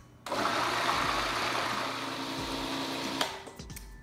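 Food processor running, blending boiled sweet potatoes and dates into a purée; it starts just after the beginning and cuts off suddenly about three seconds later.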